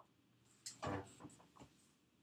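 Handling noise at the kitchen counter: a quick cluster of four or five knocks and clatters about a second in, as the fondant trimming tool and scraps are moved on the countertop.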